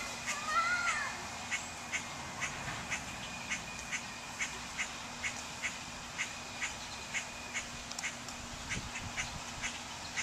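Animal calls: an arched call in the first second, then a regular run of short, sharp chirps at one pitch, about two a second.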